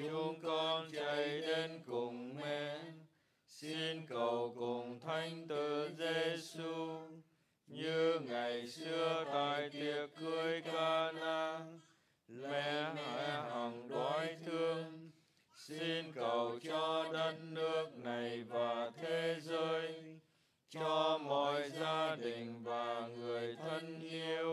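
A man's voice chanting a Vietnamese Catholic prayer to the Virgin Mary in the traditional sung recitation tone. The pitch stays level and steps between a few notes, in phrases of three to four seconds with short breaths between them.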